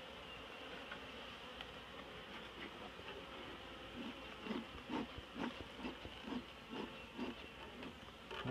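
Honeybees buzzing around an open log hive and a piece of brood comb taken from it. A steady hum runs throughout, and from about halfway louder buzzes come and go a few times a second.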